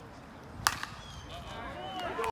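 A baseball bat striking a pitched ball with a single sharp hit about two-thirds of a second in, followed by spectators' voices and shouts.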